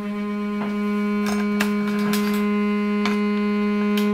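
A cello holding one long bowed low note, steady in pitch, which stops right at the end. A few brief clicks sound over it.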